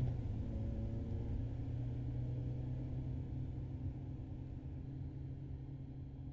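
Car cabin road noise: a steady low rumble and engine hum of a car cruising on a highway, slowly fading out.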